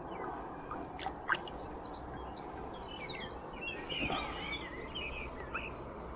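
Small birds chirping in a quick cluster of short calls through the middle, over a steady background hiss, with two faint clicks about a second in.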